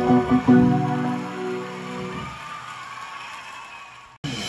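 Upright piano: a couple of chords struck in the first half-second, then the last chord left ringing under the sustain pedal and slowly dying away over the next few seconds.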